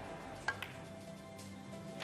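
Soft, sustained background music score. About half a second in comes a sharp click of the cue tip striking the cue ball, and about a second later a fainter click of ball on ball as the blue is potted.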